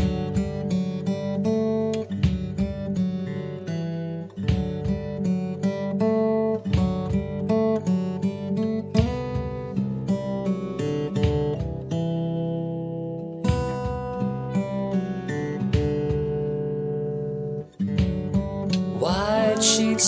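Acoustic guitar picking a steady instrumental intro, starting suddenly out of silence as a new song begins; a singing voice comes in near the end.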